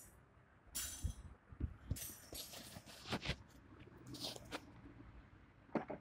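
Handling noise from a handheld phone camera being moved about: rustling, with several light knocks and a sharp click near the end.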